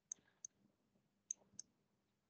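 Faint clicks of a stylus tapping a tablet screen as digits are written: four short taps in two pairs, each pair about a third of a second apart.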